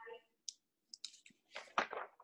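Quiet video-call audio with a few faint, short clicks in the first second or so, then a voice saying "aye" near the end.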